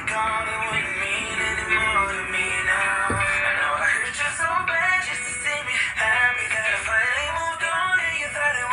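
R&B song playing: a male voice singing over the track.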